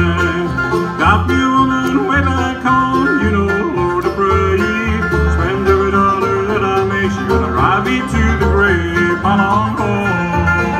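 Live bluegrass band playing a song, with banjo and guitar.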